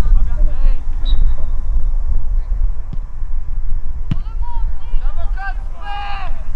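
Wind rumbling on the microphone over distant shouts from football players on the pitch, with one sharp knock about four seconds in.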